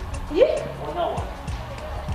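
Background music with low drum thumps and light, regular ticking percussion, and a short voice exclamation that rises and falls about half a second in.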